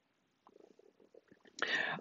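A man's pause in speaking: near silence with a few faint mouth sounds, then an audible breath in during the last half second, just before he speaks again.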